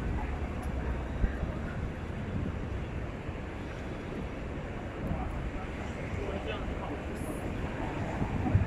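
City street ambience: a steady hum of road traffic with the indistinct voices of passersby.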